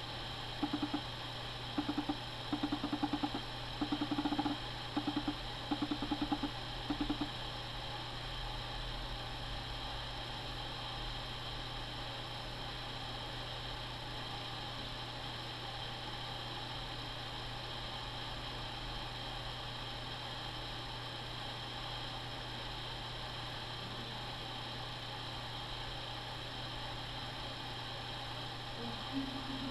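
Steady low electrical hum with a constant hiss. In the first seven seconds there is a run of about a dozen short, low buzzing pulses of uneven length, which then stop, leaving only the hum and hiss.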